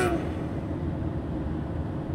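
Steady low rumble of a Mercedes-Benz Sprinter van's engine and tyres, heard inside the cab while it cruises at highway speed.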